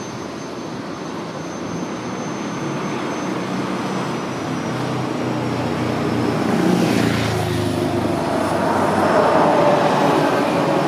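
Street traffic noise growing louder as a motor vehicle approaches, passing close about seven seconds in, followed by a steady engine whine.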